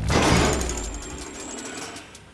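Cartoon sound effect of a zipline seat running along its steel cable: a sudden rattling whir that starts loud and fades away.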